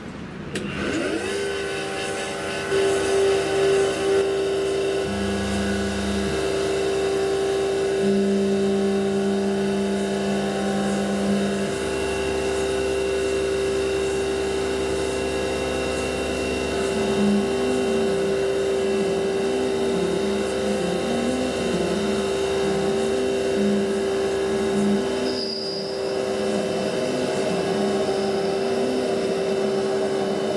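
CNC mini mill spindle spinning up in the first second, then running with a steady whine as the end mill cuts aluminium. Beneath it a lower tone shifts pitch in steps and, in the second half, wavers up and down as the axes move the cutter.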